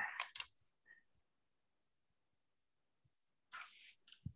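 Near silence: quiet call audio. A couple of faint clicks come just after the start, and a brief soft hiss comes near the end.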